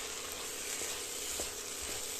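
French beans in masala sizzling steadily as they fry in oil in a kadhai, stirred with a wooden spatula, with a few faint ticks.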